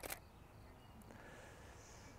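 Near silence: faint outdoor background with a low rumble, and a brief soft noise burst right at the start.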